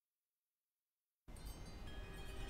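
Silence for just over a second, then chimes start abruptly and ring on as a shimmering wash of several steady high tones.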